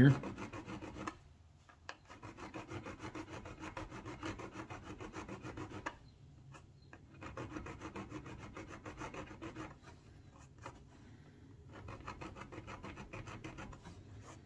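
Small hand file scraping back and forth in quick strokes over the solder joint on a model railway turnout frog, filing the solder dome down flat. The strokes come in several runs broken by short pauses.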